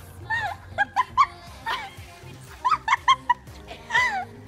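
A girl laughing in short, high-pitched fits and squeals, over quiet background music.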